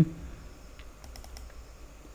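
A few faint, quick computer mouse clicks about a second in: the program being double-clicked to launch it.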